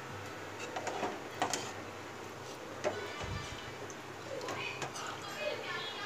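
A metal ladle stirring rice and water in a metal pot: soft sloshing with a few light clinks of the ladle against the pot.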